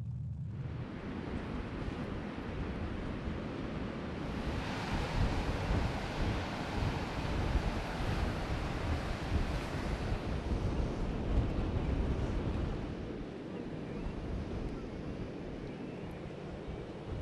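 Surf breaking on a beach, with wind buffeting the microphone. The rush of the waves swells about four seconds in and eases off again near the end.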